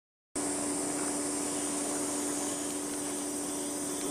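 A steady background hum that begins abruptly a fraction of a second in. It holds a constant low tone and a constant high-pitched hiss, without change.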